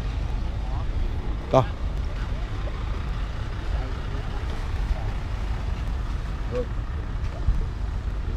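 Wind buffeting the microphone of a camera carried along a seafront promenade, a steady low rumble. A short voice sounds about a second and a half in.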